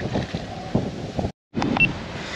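Wind buffeting the microphone, a rough, uneven rumble that drops out completely for a moment about a second and a half in.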